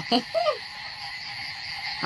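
Night-time chorus of frogs and insects, steady, with a high chirp pulsing several times a second.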